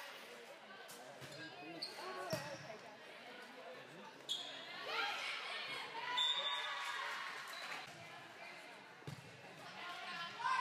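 Volleyball being struck in an echoing gym: sharp slaps of hands on the ball, the clearest about two seconds in and more through the rally. Players' voices calling in between.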